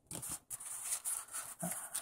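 Pokémon trading cards rustling and sliding against each other in the hands as the stack from a freshly opened booster pack is sorted, with a run of small irregular clicks and scrapes.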